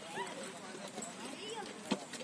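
Voices of people calling out around a horse pulling a heavily loaded paddy cart, with scattered knocks and one sharp knock near the end.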